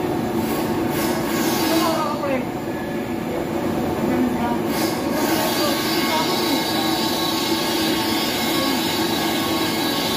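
Steady industrial running noise from a plastic film blowing machine in operation: a constant motor hum and whir, with a few brief high squeals over it.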